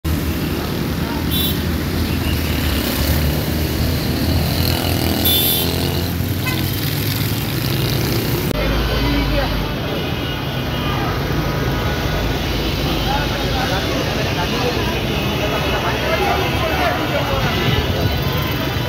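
Street traffic with vehicle and motorcycle engines running. After a cut about eight and a half seconds in, a crowd of people talking over one another, with traffic behind.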